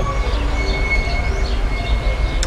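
Steady low rumble of outdoor background noise, with a few faint steady tones above it.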